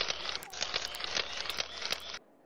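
Dense crackling, static-like noise full of fine clicks over a steady low hum.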